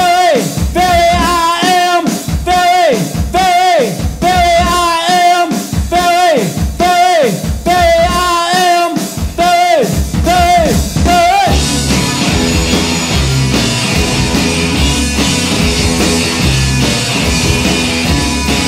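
Live rock band, electric guitars, bass and drums, playing an instrumental passage. A repeated note that drops in pitch at its end comes about once a second, then about two thirds of the way through the band breaks into a dense, thick wall of sound.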